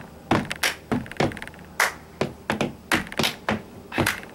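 Hand claps and taps, about a dozen sharp strokes at an uneven rhythm.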